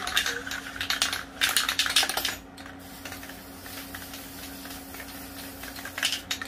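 Aerosol spray-paint can being shaken, its mixing ball rattling in quick bursts of clicks over the first two seconds or so, then a steady low hum.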